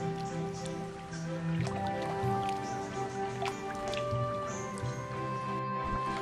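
Soft background music of long held notes that change every second or two.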